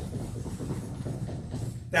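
A Cellerciser rebounder, a mini trampoline, bounced in quick steady rhythm as a man runs in place on it with bent knees: the springs and mat give a fast, even clatter of steps.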